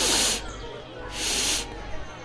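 A person sniffing hard through the nose, searching for a scent: two long sniffs about a second apart.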